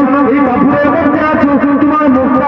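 A man's voice, amplified through a microphone, singing in a sustained melodic line that dips and returns in a regular, repeating pattern.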